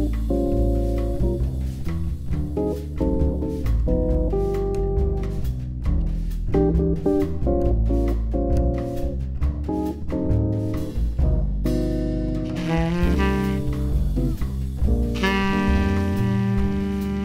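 Instrumental jazz played by a quartet: a plucked double bass and drums under quick chordal phrases. A saxophone comes in with a bright, sustained line near the end.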